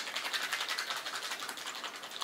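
A small plastic container of horseradish dressing shaken hard and fast by hand, making a rapid, even clicking rattle.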